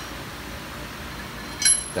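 Steady background hum with one short, sharp metallic clink near the end.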